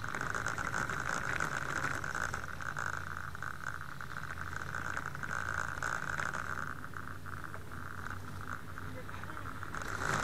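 A steady trilling chorus of night insects, with a higher pulsing trill that drops out about two-thirds of the way through. Under it is the rattle and running noise of a bicycle being ridden.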